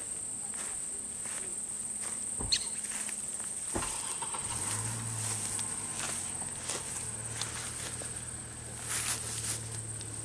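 A steady high-pitched insect trill runs throughout, with scattered footstep clicks on dry ground. A low steady hum comes in about halfway through.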